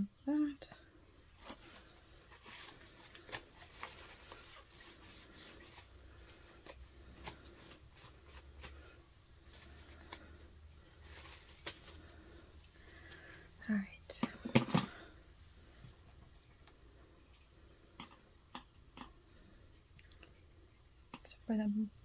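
Quiet room with faint, scattered small clicks and handling sounds on a tabletop, and a brief voice-like sound about 14 seconds in.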